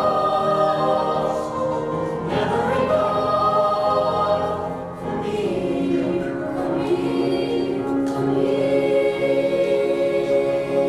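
High school mixed choir singing held chords, moving to new chords twice, with a brief drop in loudness about five seconds in as the phrase changes.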